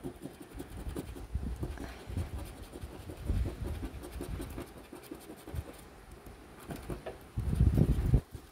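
A coin scraping the coating off a scratch-off lottery ticket in quick, irregular strokes, loudest just before the end.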